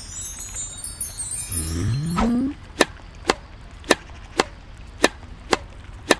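Cartoon sound effects: a high sparkling chime twinkle, then a short rising glide, then a tennis rally of racket-on-ball hits: six sharp pocks, about two a second.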